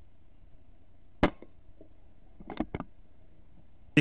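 A single air rifle shot, sharp and sudden, about a second in. A little over a second later come three quick, short knocks.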